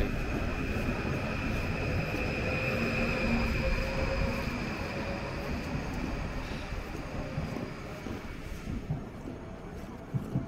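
Electric passenger train pulling out along the platform and running away into the distance. Its steady high whine and rolling noise fade as it draws off.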